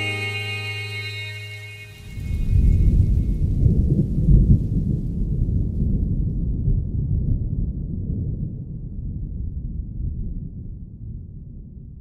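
Held notes of the song fade out, then about two seconds in a long low rumble starts suddenly and slowly dies away.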